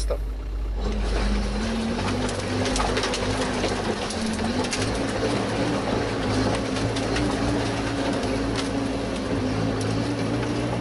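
Off-road vehicle engine running steadily at low revs, a constant low hum whose pitch wavers only slightly; it settles in about a second in.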